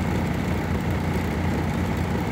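Vehicle engine idling, a steady low rumble heard from inside the cab.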